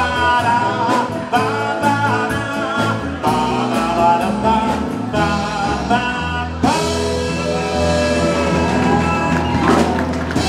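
A live band of keyboards, guitar and drums backs singing. About seven seconds in, the music settles into a long sustained final note.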